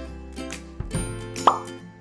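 Light background music with a steady beat. About one and a half seconds in, a short, sharply rising 'plop' sound effect marks an on-screen title popping up.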